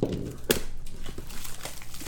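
Plastic packaging on a trading-card box crinkling and rustling as it is handled and torn open, with a sharp click about half a second in.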